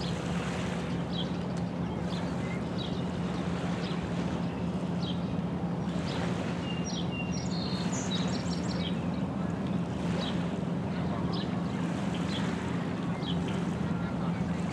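A steady low hum like a distant motor, with small birds chirping briefly about once a second and a short burst of twittering a little past the middle.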